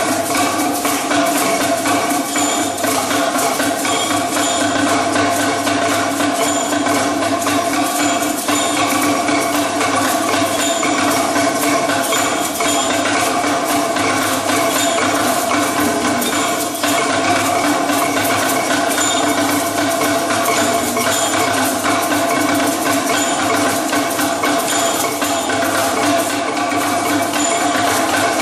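A group of bamboo percussion tubes beaten together without pause, each player keeping their own rhythm, making a dense, continuous wooden clatter over a steady ringing pitch. It is a traditional playing to announce good news, meant to be kept up for a long time.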